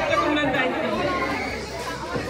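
Chatter of several voices talking at once in a large hall, with no single clear speaker.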